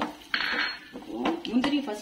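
Wooden spatula stirring cashews and raisins in hot fat in a non-stick frying pan: sharp knocks and scrapes of wood on the pan, with a brief hiss about a third of a second in.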